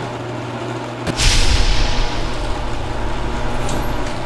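Sound effects of an animated video bumper: a low rumbling drone, then about a second in a sharp hit followed by a hissing whoosh that fades away over the next second.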